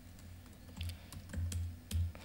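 Typing on a computer keyboard: a quick, uneven run of key clicks, most of them after the first half second, with a few dull low thumps among them.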